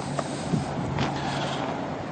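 Steady low hum of an idling car engine, with outdoor background noise.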